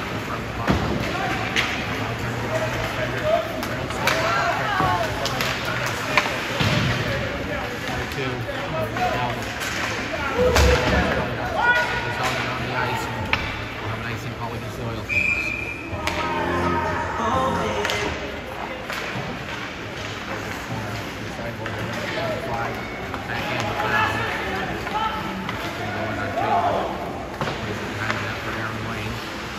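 Ice hockey play in an echoing rink: repeated sharp clacks and thuds of sticks, puck and boards, with shouting voices throughout. A short whistle blast comes about fifteen seconds in.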